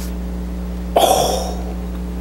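An egg being pushed by air pressure up into an upside-down glass bottle as the candle-heated air inside cools: a sudden short rush of air about a second in that fades within half a second, over a steady low hum.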